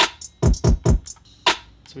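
Hip-hop beat playing back from a DAW: drum-machine kick hits, each sweeping down in pitch into a deep low end, about five in two seconds, with hi-hat ticks above.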